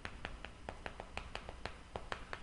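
Chalk writing on a blackboard: a quick, irregular run of faint clicks as the chalk tip strikes and lifts from the board with each stroke.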